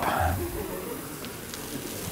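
Liquid nitrogen being poured from a Dewar jug into a stainless-steel flask: a quiet, steady hiss of pouring, boiling liquid that fades toward the end.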